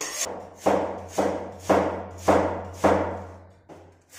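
A kitchen knife slicing peeled lotus root on a wooden chopping board: about five cuts a little over half a second apart, each a sharp knock that fades, with a low steady hum underneath.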